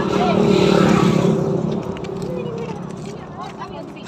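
A motor vehicle passing by close on the road: its engine and tyre noise swells over the first second or so, then fades away.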